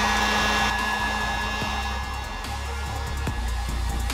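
Electric heat gun running steadily, a rush of blown air with a fan whine, aimed at a plastic pony bead on a metal cookie sheet to melt it.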